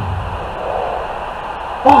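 A pause in a man's outdoor speech filled by a steady, even background noise, with his voice returning just before the end.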